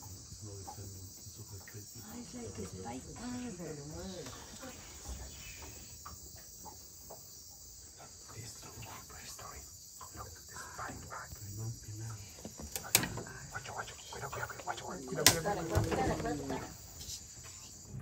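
Night-time rainforest insect chorus: a steady, high-pitched chirring, with quiet voices now and then and two sharp knocks in the second half.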